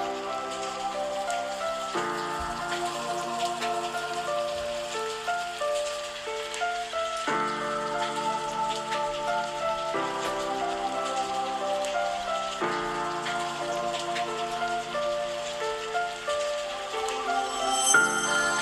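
Slow background music of sustained chords that change every few seconds, with a fine rain-like patter running under it.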